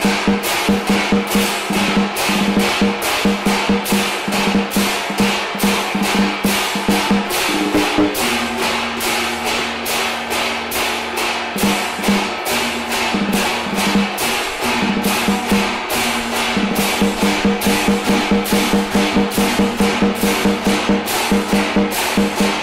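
Chinese funeral percussion: a large flat drum beaten with two sticks in a fast, even beat, about three to four strokes a second, with ringing gongs. A steadier held tone sounds for a few seconds about eight seconds in.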